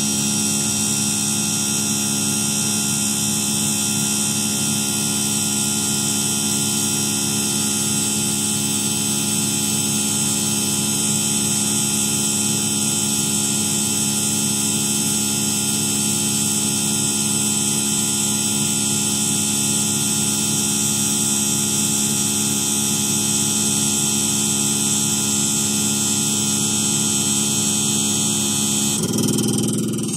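CR318 PRO common rail injector test bench running a test: its electric pump drive and high-pressure pump hold the injector at 100 MPa, making a steady hum with many whining tones. Near the end the pitch shifts and the sound dies away as the bench stops the test.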